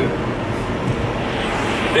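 Car driving along a paved road, heard from inside the cabin: a steady mix of engine and tyre noise.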